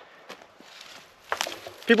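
Footsteps and rustling in dry grass with camera handling noise while the camera is carried and turned, with a louder brush of noise about a second and a half in. A man's voice starts near the end.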